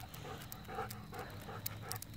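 Dog panting rhythmically, about three or four breaths a second, while walking on a leash.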